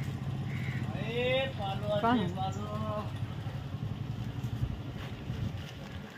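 A small auto-rickshaw engine running steadily. A person's voice calls out briefly over it, about a second in.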